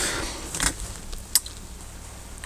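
Faint handling noise: rustling with a couple of light, sharp clicks, over a low steady hum.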